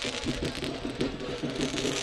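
Fireworks going off, their spark trails giving a dense, steady fizzing hiss full of small crackles.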